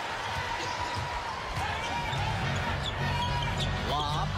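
Basketball dribbled on a hardwood arena court, with a few short high squeaks, over the steady noise of the arena crowd.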